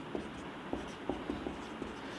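Pen writing on a paper drawing sheet: a few faint, short scratches and taps of the tip as letters are written.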